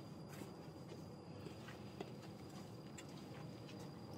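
Faint footsteps of 7-inch platform mule shoes (Pleaser Adore-701) on a carpeted floor: a few soft taps over steady low room hiss, the sharpest about halfway through.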